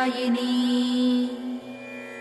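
Female singer holding the last note of a chanted Sanskrit stotram line, which fades out about a second and a half in, leaving a steady instrumental drone of the devotional accompaniment.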